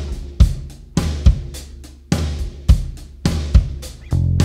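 Drum kit playing a steady rock beat, with kick drum and snare and hi-hat over it, in a song's opening bars.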